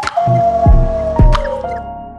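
Short electronic music jingle serving as a sound logo. It has three deep thumps about half a second apart, a few short clicks and a long tone that slowly falls in pitch, then settles into held notes near the end.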